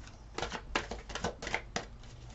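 Tarot cards being shuffled by hand: an irregular run of crisp slaps and clicks, several a second.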